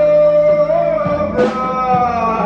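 Live swingcore band music: a male singer holds one long note over the band, changing to a new held pitch about a second and a half in, with the band's accompaniment sustained underneath.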